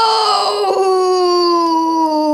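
A child's long, loud, drawn-out wail held on one note that slowly sinks in pitch, a mock cry of despair.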